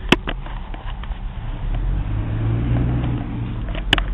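Car engine and road noise heard from inside the cabin, a steady low hum that swells for a second or so past the middle. Sharp clicks just after the start and again near the end.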